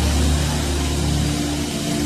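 Soft background music with low chords held steadily, under a pause in the preaching.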